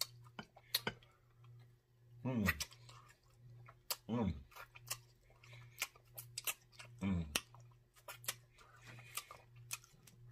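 Close-up chewing and wet lip-smacking on rib meat, with sharp mouth clicks all through and three short hummed "mm"s of enjoyment, over a faint steady low hum.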